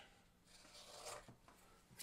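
Near silence, with a faint rustle of hands handling the vinyl sticker and its paper backing about a second in.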